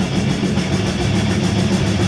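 Heavy metal band playing live: distorted electric guitars and bass over a fast, even drum pulse, loud and dense.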